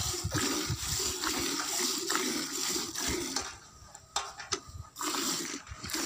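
Water buffalo being milked by hand: streams of milk squirting in quick spurts into a steel pail. The spurts stop for a second or so a little past the middle, then start again.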